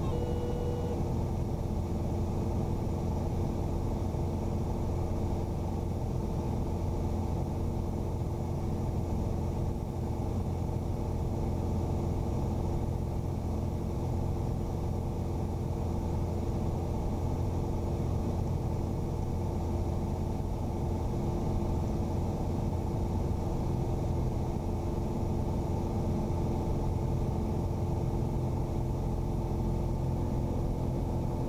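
Piper Arrow's four-cylinder Lycoming engine and propeller running steadily in flight, a constant drone during a low approach over a runway.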